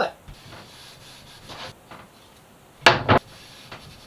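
Gloved hands rubbing oil into a wooden cabinet door frame: soft, scratchy wiping strokes, with two short, louder strokes just before three seconds in.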